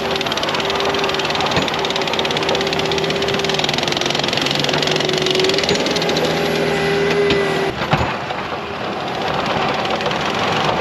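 ASV RT-75 compact track loader running under load as it pushes and scrapes hard-packed snow with a plow. The engine noise carries a steady whine that cuts off about three-quarters of the way through, followed by a brief knock.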